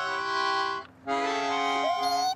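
A small concertina-style squeezebox playing two held chords of a simple tune, with a short break about a second in.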